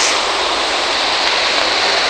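Steady hiss of vehicle tyres on a wet road as a minibus drives past close by.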